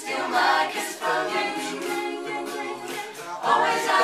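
Mixed youth a cappella group singing in harmony, with sustained backing chords and a steady ticking beat.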